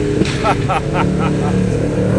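V8 car engines running hard at speed, a steady low drone that grows stronger about halfway through.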